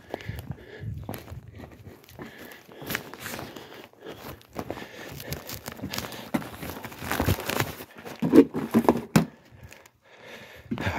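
Newspaper flyers rustling as they are handled, with footsteps, ending in a cluster of sharp knocks about eight to nine seconds in as the paper is set down at the door.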